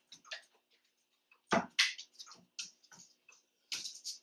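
Irregular light clicks and taps of a standard poodle's paws and claws on a hardwood floor and a low training platform as the dog shifts position, with one louder knock about a second and a half in.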